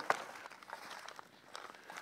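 Quiet pause with faint outdoor background: a soft click just after the start, then light handling of a plastic meal pouch.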